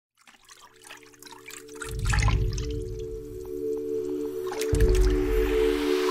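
Intro music: a sustained synth chord fades in from silence, with deep bass swells about two seconds in and again near the end, over watery drip and trickle sound effects.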